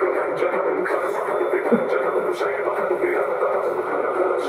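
Action movie trailer's soundtrack playing back, thin and muffled in a narrow band, as though filtered, a dense continuous wash of sound with no pauses.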